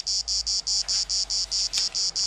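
An insect chirping in a fast, even train of short high-pitched pulses, about six or seven a second.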